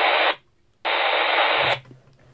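Baofeng UV-5R handheld transceiver hissing static from its speaker in two bursts, the first about half a second long and the second nearly a second, as its squelch opens on a monitored channel.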